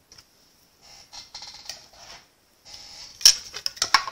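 Stampin' Up! Mini Stamp 'n Cut & Emboss Machine being hand-cranked, its plastic cutting plates with die and paper passing through with faint rubbing, then a run of sharp plastic clicks and clacks near the end as the plate sandwich comes out.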